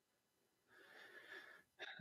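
Near silence, with a faint breath drawn in lasting just under a second, starting about a second in.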